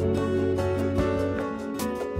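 Gentle background music with plucked guitar notes over sustained tones.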